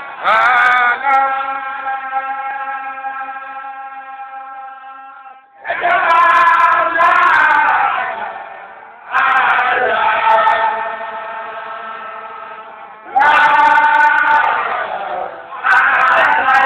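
Male voices chanting a Baye Fall Sufi zikr (dhikr) in long sung phrases. A new phrase starts about every four seconds, each rising in strength and then trailing off in a long held note.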